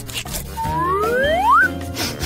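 Background music with a cartoon-style whistle effect gliding upward in pitch, starting about half a second in and cutting off after about a second.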